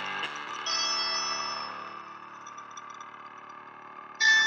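Background guitar music: a few short notes, then a chord about half a second in that rings out and slowly fades.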